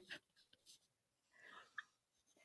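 Near silence: a pause in a video call's audio, with one faint, short sound near the end.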